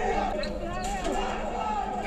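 Faint voices in the background, with a few light knocks.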